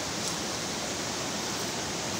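Whitewater river rapids rushing over rocks, a steady, even rush of water.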